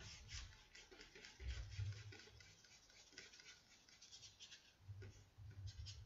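Faint, repeated scratchy strokes of a fairly dry paintbrush dragging paint across paper.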